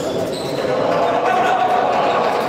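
Handball bouncing on a sports-hall floor during play, with brief shoe squeaks and voices calling out, all echoing in the hall.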